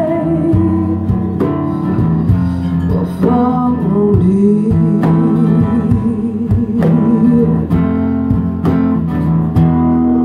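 Acoustic guitar strummed steadily while a woman sings long, wordless held notes with a wide vibrato. The singing fades out near the end and the guitar carries on.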